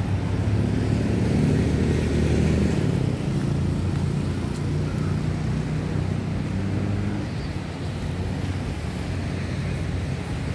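Low, steady motor-vehicle engine drone from road traffic, louder for the first three seconds and then holding level.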